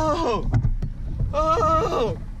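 A man's drawn-out excited yells. One trails off, falling in pitch just after the start, and another begins past halfway and drops at the end, over a low background rumble.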